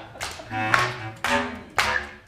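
Improvised music: a quick series of short, sharp pitched notes and taps, about five in two seconds, with one low held note about half a second in.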